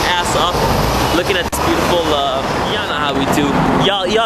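Voices chattering and laughing, too indistinct to make out words, over a steady low rumble of city street traffic.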